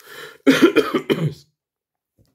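A man coughing: a quick run of several loud coughs about half a second in, after a brief intake of breath.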